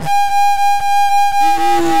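Flute holding one long, steady high note, sounding the A the band tunes to. A voice calls out over it near the end.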